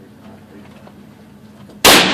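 A single loud shot from a Kel-Tec SUB-2000 9mm carbine near the end, followed by the echo of the enclosed range.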